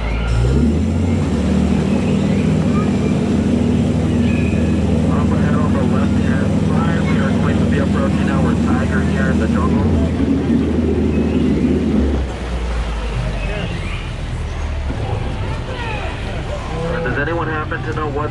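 Tour boat's motor speeding up as the boat pulls away, its hum rising in pitch, then running steadily before easing back to a lower, quieter hum about twelve seconds in. Faint voices are heard over it.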